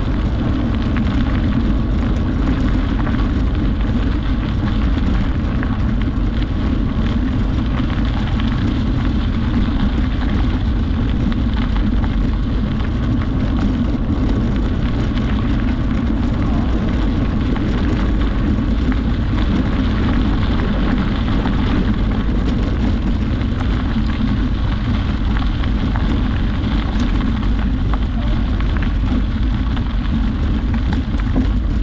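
Bicycle tyres rolling steadily over a gravel trail, the crunch and crackle of the gravel under a heavy, constant wind rumble on the microphone.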